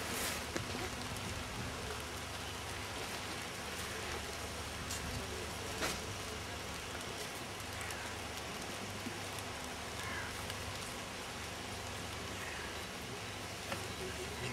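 Light rain falling steadily, an even hiss, with a faint knock or two partway through.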